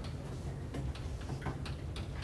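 Chalk on a blackboard, tapping and scratching in short, uneven clicks, several a second, as it writes. A steady low hum lies underneath.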